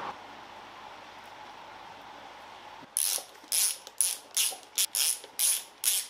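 Socket ratchet wrench clicking in quick back-and-forth strokes, about eight strokes in the second half, tightening the bolts of a mechanical fuel pump onto the engine block.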